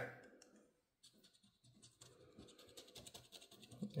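A coin scraping the latex coating off a paper scratch-off lottery ticket: faint, irregular rasping strokes that begin about a second in.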